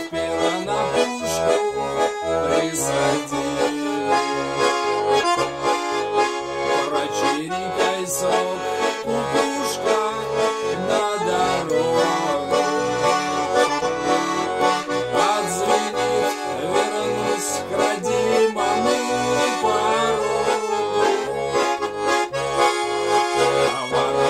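Russian garmon (button accordion) playing an instrumental passage without singing: a melody on the right-hand buttons over an even, pulsing bass-and-chord accompaniment, with the bellows drawn wide.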